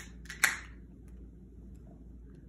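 Aluminium beer can's pull tab cracked open: a couple of sharp clicks, then a short hiss of escaping carbonation about half a second in.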